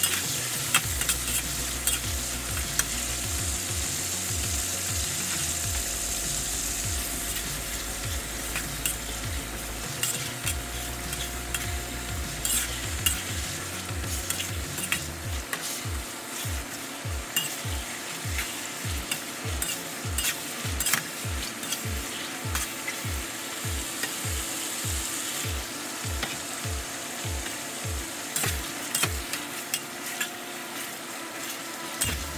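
Chicken pieces frying in hot oil in a steel wok, with a steady sizzle. Over it come frequent clicks and scrapes as a metal spatula stirs and turns the pieces against the wok.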